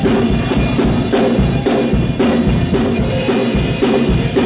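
Live gospel band music: a drum kit keeping a steady beat under electric bass guitar.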